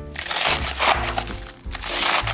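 Kitchen knife chopping through crisp romaine lettuce on a cutting board, a few crunchy cuts through the leaves and ribs, over background music.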